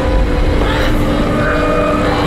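A loud, deep rumbling drone with several steady humming tones held over it: a cartoon sound effect for a character's glowing green demonic power.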